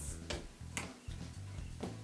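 A few faint, unevenly spaced clicks and taps as a small silicone lid is snapped over the rim of a container, over a low steady hum.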